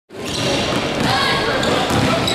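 Basketball game noise in a gym: a basketball bouncing on the hardwood floor over a hubbub of overlapping crowd and player voices.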